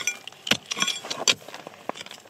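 A steel bar striking and prying at rock, with sharp metallic clinks: two hard strikes and several lighter taps and stone clinks between them.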